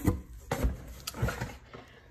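Handling noise: three light knocks, about half a second apart, as things are moved about on a kitchen counter, fading to quiet room tone near the end.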